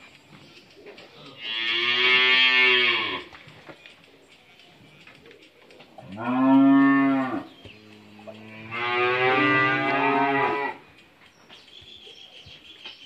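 Cattle mooing: three long moos a few seconds apart, each lasting one to two seconds, the middle one the loudest.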